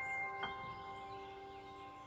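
Background music of soft chime-like notes ringing on and slowly fading, with one new note struck about half a second in.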